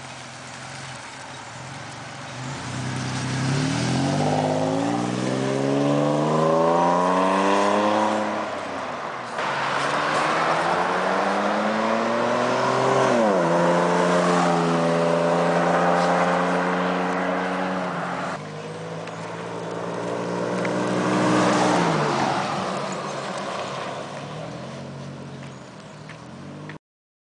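A 1997 Toyota Tacoma pickup's engine and exhaust on its stock air intake, accelerating away through the gears. The engine note climbs, drops at a gear change and holds steady as the truck drives by. This repeats over a few separate takes, with the last one rising and then fading.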